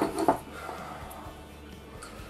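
Soft background music, with a few light taps of a knife on a wooden cutting board at the very start.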